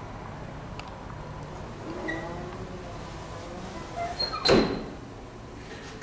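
An old Otis elevator's sliding car door closing, followed by the swinging hall door shutting with a thud about four and a half seconds in, over a steady low hum.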